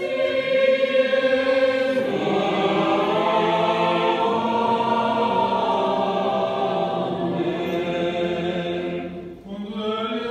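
Choir singing an Orthodox liturgical chant in long, held notes. There is a brief break about nine seconds in, then the singing starts again.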